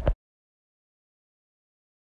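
Dead silence: the sound track cuts out completely just after the start, right after the tail of a spoken word.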